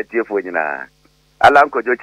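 A man speaking in short phrases, pausing for about half a second in the middle, with a steady low mains hum under his voice.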